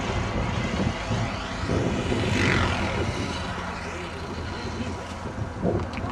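Radio-controlled model aircraft engine running as it flies overhead, its whine dropping in pitch as it passes about halfway through.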